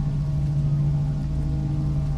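Dark ambient background music: a low steady drone with fainter sustained tones above it, over a low rumble.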